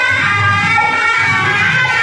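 Music played loud over a public-address horn loudspeaker, a wavering melody line carried over a steady low accompaniment.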